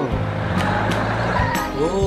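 Cartoon vehicle engine sound effect, a steady low hum with a noisy rush, under background music. A character's pitched voice starts up near the end.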